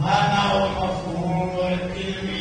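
A man's voice reciting in a slow, melodic chant with long held notes, in the manner of Quranic recitation. It starts abruptly at the beginning.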